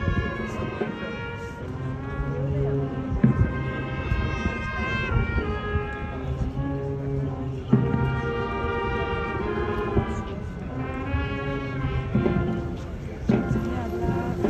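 Brass band playing a slow, solemn march, with long held chords that change every second or two and a few drum strokes.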